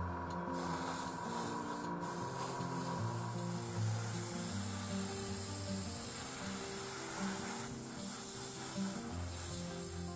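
Airbrush hissing steadily as it sprays paint, with a brief break about two seconds in, over background music.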